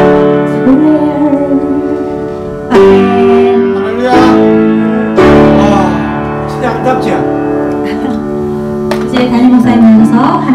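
A woman singing a hymn into a microphone, accompanied by piano chords struck every second or so that ring on between strokes.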